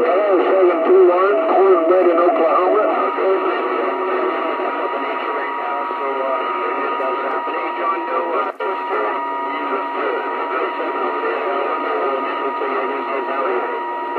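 CB radio receiver audio: distant stations' voices coming through garbled and unintelligible, with static. A steady whistle from a carrier sits under them from about three seconds in, and there is one brief crackle past the middle.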